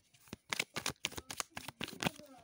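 A deck of tarot cards being shuffled by hand: a quick, irregular run of sharp card clicks.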